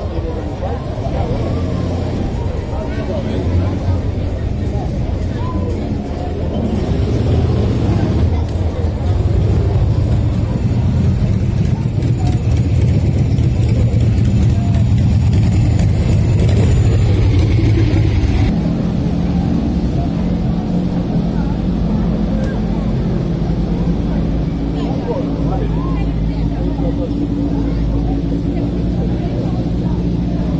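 A vehicle engine running steadily close by, its low note changing about two-thirds of the way through, with people talking over it.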